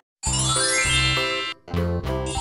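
A sparkling chime sound effect: a rising run of bright tinkling tones over upbeat cartoon background music with a steady bass pulse. It starts after a brief silence and drops out for a moment near the end.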